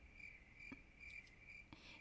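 Near silence with a faint, high chirp repeating evenly about three times a second.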